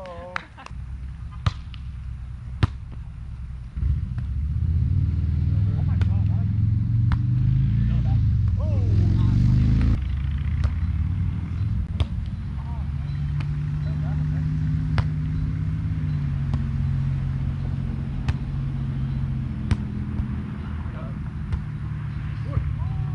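Volleyball being struck by hands and forearms during a rally: sharp smacks every second or few, over a low engine rumble that swells about four seconds in and is loudest around eight to ten seconds.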